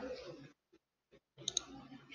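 Computer mouse button clicking: two sharp clicks close together about one and a half seconds in.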